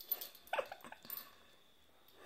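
A dog making a few short whimpering sounds in the first second or so, then falling quiet.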